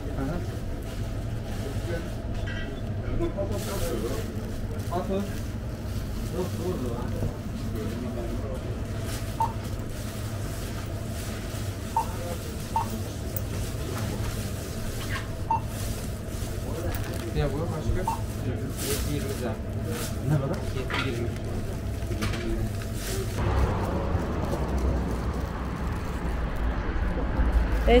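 Shop-counter sound with faint talk over a steady electrical hum, and several short, high beeps spaced a second or more apart. About 23 seconds in, this gives way to a louder low outdoor rumble, like wind on the microphone, with voices near the end.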